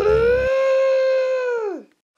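A single long howling cry that glides up at the start, holds one steady pitch, then falls away and stops just before the two-second mark.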